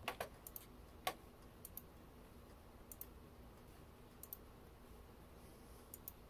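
Faint, scattered clicks of a computer mouse, several coming in quick pairs, the loudest about a second in.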